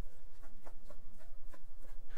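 A chef's knife slicing raw chicken breast into small pieces on a wooden cutting board, the blade tapping the board in a run of soft, short knocks about four a second.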